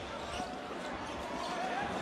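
Basketball arena sound during live play: a steady haze of crowd noise with the ball in play on the court, and a faint held tone through the middle.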